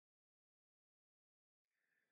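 Silence.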